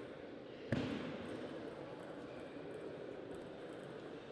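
A single sharp knock about a second in, over a steady background hum of the playing hall.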